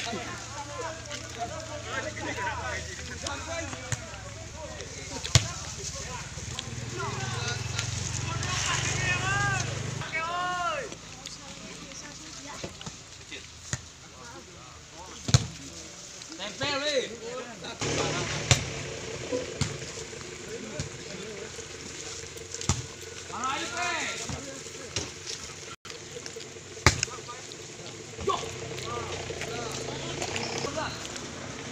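Players shouting and calling to each other during a casual outdoor volleyball game, with the sharp slap of the volleyball being struck a few times.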